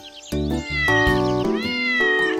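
A cartoon kitten meowing twice, two drawn-out meows about a second apart, over backing music that comes in louder shortly after the start.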